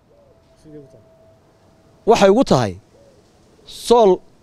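A man speaking for about a second in the middle and starting again near the end. Before that, faint low hooting calls of a bird can be heard in the background.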